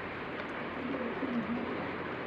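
A bird cooing: a few short low notes about half a second to a second and a half in, over a steady background hiss.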